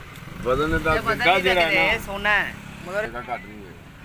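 Men talking in short bursts, with a brief pause in the middle, over a faint steady low hum.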